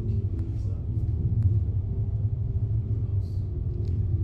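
A steady low background rumble, with a few faint clicks.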